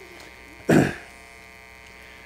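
A man clears his throat once, briefly, into a microphone, over a steady electrical mains hum from the sound system.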